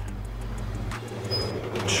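Steady low rumble and hiss of road traffic on the street.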